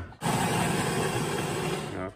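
Jura bean-to-cup coffee machine running, a steady even whirring noise that starts suddenly just after the beginning and stops near the end.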